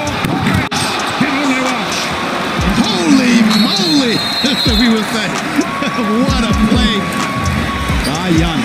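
Basketball game broadcast audio: a basketball bouncing on a hardwood court, several dribbles in the second half, mixed with a background music track.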